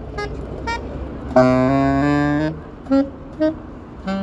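Two saxophones playing a duet: a few short detached notes, then both hold a loud two-note chord for about a second, then a couple more short notes near the end.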